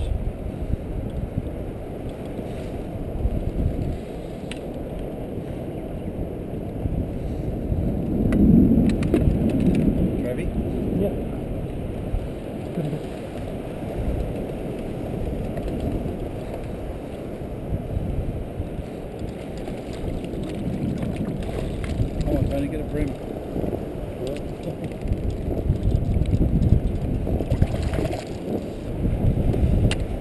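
Low, shifting rumble of wind and sea around a small boat at sea, with faint, indistinct voices now and then, about eight seconds in and again about twenty-two seconds in.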